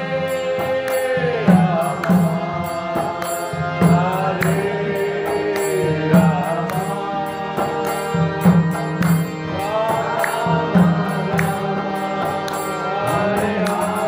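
Devotional kirtan: male voices chant a mantra over a steady harmonium accompaniment, with regular strokes of a mridanga drum.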